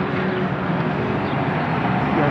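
Street traffic: a motor vehicle's engine running close by, a steady low drone over road noise.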